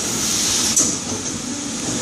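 IBM30 injection blow moulding machine running: a steady mechanical noise with a constant high hiss, and a short click a little under a second in.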